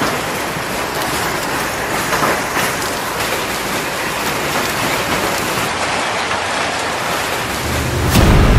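Rain and hail falling steadily on the ground, an even hiss that holds level throughout.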